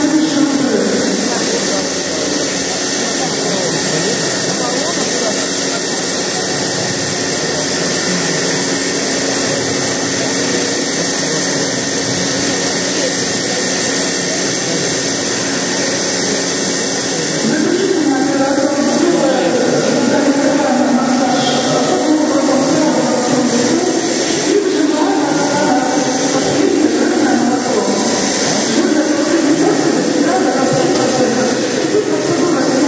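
Machine milking in progress: a steady hiss from the running milking machine. Indistinct voices join in the background from a little past halfway.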